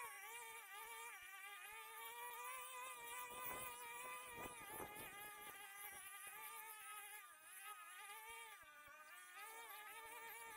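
Faint two-stroke brush cutters running, their high engine whine wavering in pitch as the throttle is worked. A short stretch of crackling comes about halfway through.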